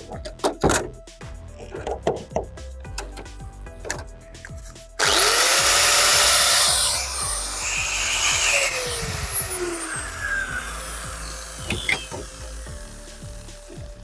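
Angle grinder with no disc fitted, run on 230 V AC from a portable power station's outlet, which shows that the outlet works. After a few handling clicks, it is switched on about five seconds in, spins up to a high whine, runs for a couple of seconds, then is switched off and winds down with a falling whine over several seconds.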